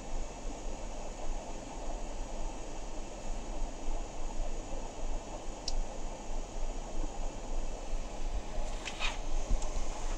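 Steady background hiss with a low mains hum, and faint scratching of a metal pointed dip-pen nib drawing ink lines on sketchbook paper, with a few short scratches near the end.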